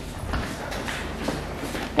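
Footsteps and shuffling on a gritty concrete floor, a few faint irregular steps.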